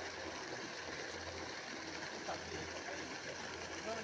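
Water from the outlet pipe of a solar-powered irrigation pump pours in a steady jet and splashes into the water of a well. The pump is running and delivering water.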